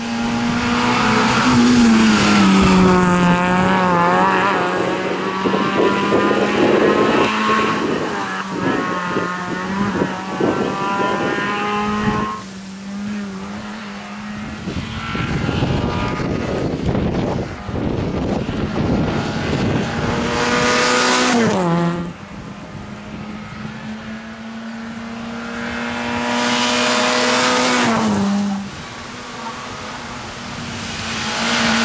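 Fiat Seicento rally car's four-cylinder engine driven hard along the stage, its note mostly held steady, with two sharp drops in revs, one about two-thirds of the way in and one near the end. It fades quieter twice and builds again as the car approaches.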